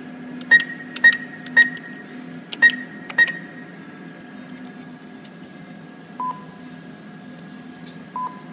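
ATM keypad beeping as a PIN is keyed in: five short beeps within about three seconds, then a single lower-pitched beep about six seconds in. A steady hum runs underneath.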